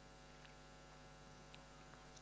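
Near silence: a faint, steady electrical mains hum in the room tone.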